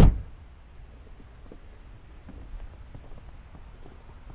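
A sharp thump right at the start, then a low steady rumble of wind and handling noise on a handheld camera's microphone, with a few faint soft taps.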